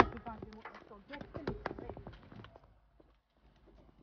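A phone being handled and set in place inside a car: a sharp knock at the start, then a run of small clicks and knocks under a few murmured voice sounds, dying away about two and a half seconds in.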